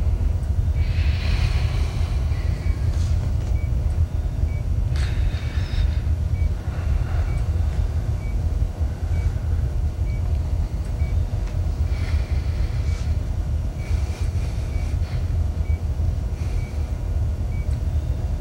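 Steady low rumble of a spacecraft interior's ambient hum, with a patient monitor giving a faint short beep about once a second.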